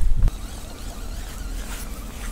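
Wind buffeting the microphone as a deep rumble that cuts off abruptly about a quarter second in, followed by a much quieter, even outdoor hiss.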